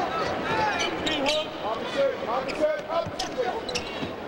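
Basketball being dribbled on a hardwood court, with voices shouting from the court and bench over the arena crowd.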